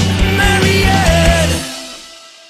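Rock band playing the close of a song, with a drum beat, bass, guitars and a sung line. The band stops about one and a half seconds in, and the last chord rings out and fades.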